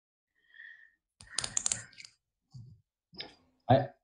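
A short run of clicks about a second in, over a quiet online-call line, then a person's voice starts near the end.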